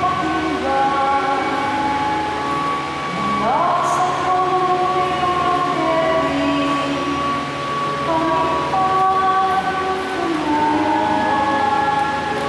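Church music of long held chords, several notes sounding together and moving to new chords every few seconds, with one note sliding up about three and a half seconds in.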